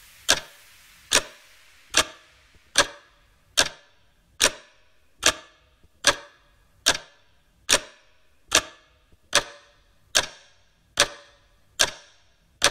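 A single sharp percussive hit in an electronic dance mix, repeating steadily about once every 0.8 seconds in a sparse break with no beat underneath, over a faint hiss that fades out in the first couple of seconds.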